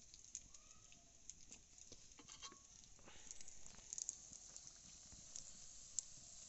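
Faint scattered crackling and ticking over a soft hiss: malpua frying in hot oil in an iron wok over a wood fire. The crackles are a little denser around four seconds in.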